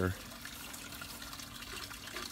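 Faint, steady trickle of floodwater overflowing the rim of a concrete overflow storm drain box and falling into it, from a retention area flooded up to the drain's rim.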